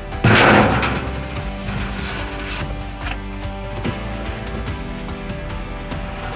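Background music. About a quarter second in, one loud crashing thud dies away over about half a second.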